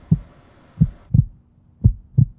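Heartbeat: low lub-dub thumps in pairs, about one pair a second.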